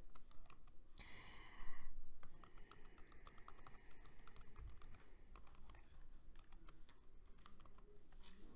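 Typing on a computer keyboard: a run of quick keystrokes entering a password, with a brief louder rushing sound between about one and two seconds in.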